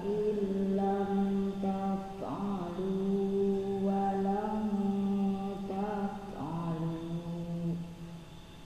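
A man chanting Quranic recitation in a melodic style, each note drawn out for one to three seconds, with a short break near the end.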